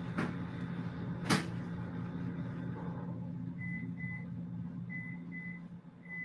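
A sharp knock about a second in, then from a few seconds in a string of short high electronic beeps, mostly in pairs, like an appliance's keypad or timer, over a low steady hum.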